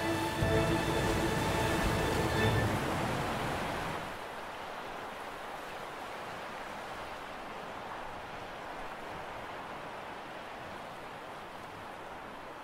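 Orchestral music fading out over the first few seconds, with some low thumps, leaving a steady sea-cliff ambience of wind and surf.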